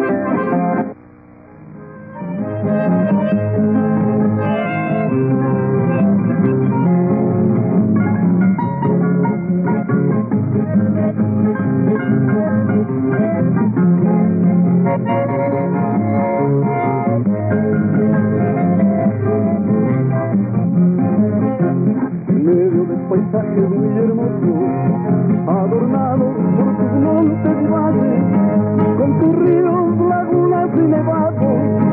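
Several acoustic guitars playing the instrumental introduction of a song, starting after a brief drop in level about a second in.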